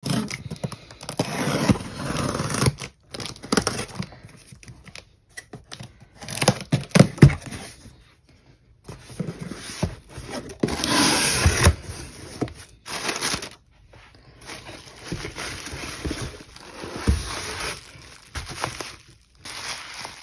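Packing tape on a cardboard shipping box being slit with a pen tip and torn open, then cardboard scraping and rustling in bursts as the inner box is pulled out and handled, with bubble wrap rustling near the end.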